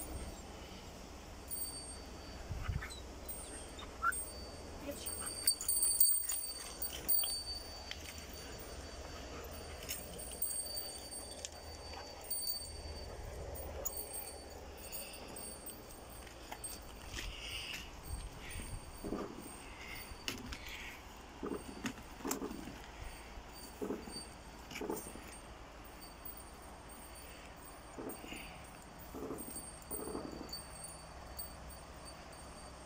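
Quiet outdoor ambience: a low wind rumble on the microphone, scattered faint knocks and rustles, and a faint steady high tone.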